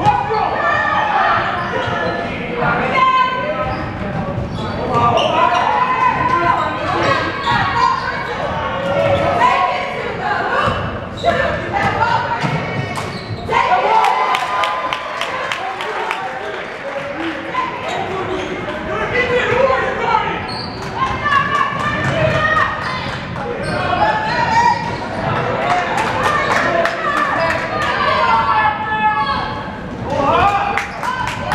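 Basketball being dribbled and bounced on a hardwood gym floor during a game, a string of short sharp thuds, mixed with players' and spectators' voices and shouts echoing in a large gym.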